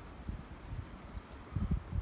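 Wind buffeting the microphone: a low, uneven rumble that grows stronger near the end.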